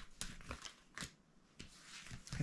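Cardboard picture cards being picked up and handled, with about four short, sharp snaps and rustles.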